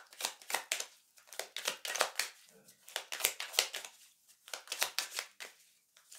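Tarot cards being shuffled by hand: quick runs of sharp papery flicks in four short bursts, with brief pauses between.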